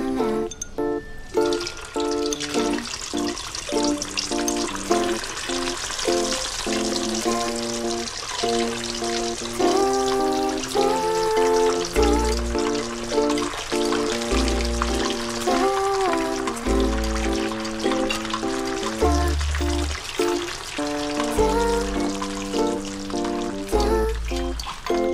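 Background music over a steady sizzle of battered mushrooms deep-frying in hot oil in a wok. The sizzle starts about a second and a half in.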